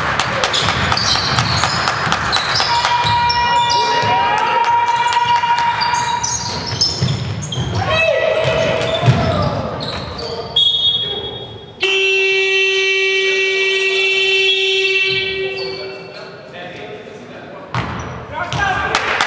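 Basketball game in a gym: the ball bouncing and sneakers squeaking on the hardwood floor, with players' shouts. About two-thirds of the way in, a loud steady horn-like game buzzer sounds for about three seconds, stopping play.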